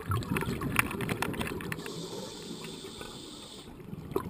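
Open-circuit scuba regulator breathing heard underwater: gurgling exhaust bubbles, then a steady hiss of an inhalation through the regulator from about two seconds in, with bubbling again near the end.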